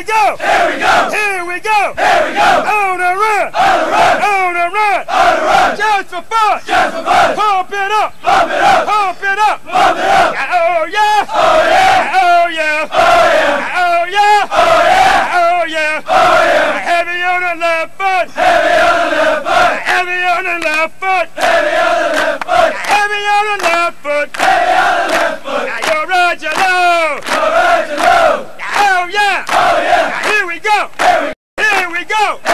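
Many male voices chanting a military cadence in unison, loud and shouted, in a steady rhythm.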